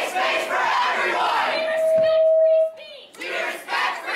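A crowd of protesters shouting a line together in unison ("Except you, you do not deserve a space!"). About halfway through, one long held shout breaks off, and after a short lull the shouting starts again.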